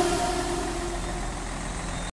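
Mercedes-Benz Actros truck's diesel engine running steadily as the truck rolls slowly, heard once the backing music fades out in the first second.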